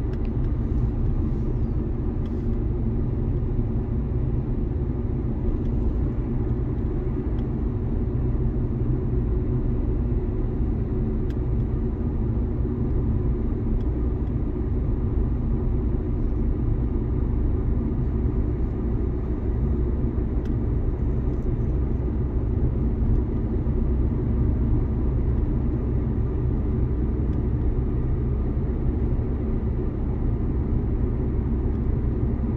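A Dacia car driven at a steady speed, heard from inside the cabin: its engine hum and tyre and road noise blend into an even low rumble.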